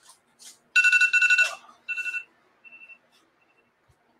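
Electronic timer alarm beeping rapidly in two steady pitches, in three bursts, the last one faint: the countdown has run out, signalling the close of bidding on a lot.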